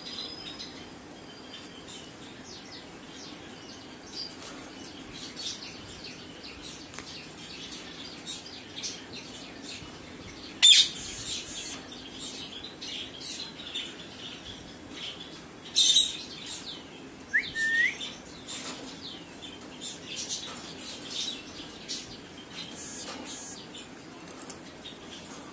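Caged Indian ringneck parakeets moving and calling: scattered small clicks and rustles, two loud short bursts about eleven and sixteen seconds in, and a brief rising whistle soon after the second.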